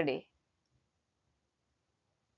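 A voice finishing a word in the first quarter second, then near silence.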